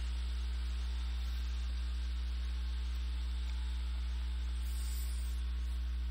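Steady electrical mains hum with a faint hiss, unchanging throughout.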